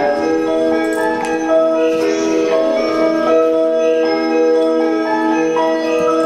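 Japanese station departure melody: a short bell-like tune of sustained, overlapping chime notes played over the platform speakers, the signal that the train's doors are about to close.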